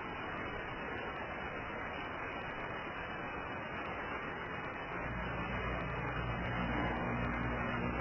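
Steady hiss of an off-air analogue TV recording, with a low hum joining about five seconds in.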